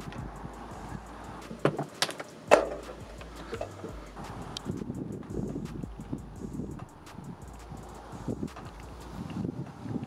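An ethernet cable being handled and fed out of an open window: a few sharp knocks about two seconds in, the loudest at about two and a half seconds, then soft, irregular rustling and handling sounds.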